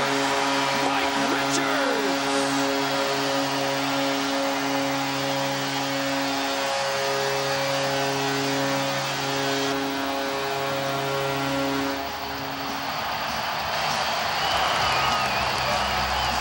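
Hockey arena crowd cheering after a home goal, with a goal horn sounding a sustained low chord over it for about twelve seconds; the horn then stops and the cheering carries on.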